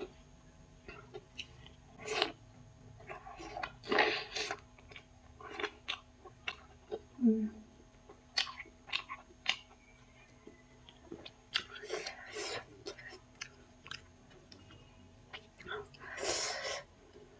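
Close-miked eating: irregular chewing and biting sounds, short wet smacks and clicks with occasional crunches, as a person chews fried shaphale and chow mein. A brief low hum about seven seconds in.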